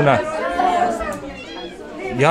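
Indistinct chatter of many children's voices talking at once in a large room, with no single voice standing out. It fades a little toward the end.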